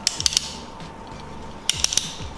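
Compact tripod's joints and locking mechanism clicking as they are worked by hand: a quick run of about three clicks, then another short run near the end.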